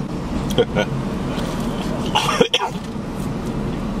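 A man coughing and clearing his throat, with one sharp cough about halfway through, as powdery chicken seasoning catches in his throat.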